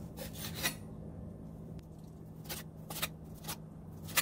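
Kitchen knife slicing through boiled chicken breast on a wooden cutting board: a few short cutting strokes near the start and three more spaced about half a second apart from about two and a half seconds in, over a steady low hum.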